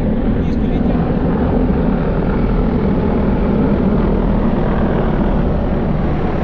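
A formation of military helicopters flying overhead: a loud, steady rotor and engine noise that does not let up.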